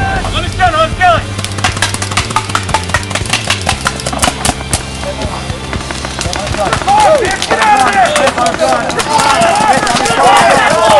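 Paintball markers firing in rapid, irregular strings of shots from about a second and a half in, thinning out about seven seconds in, with players shouting over the last few seconds.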